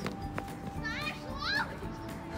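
A child's high-pitched voice calling out twice in quick short cries, over faint background music.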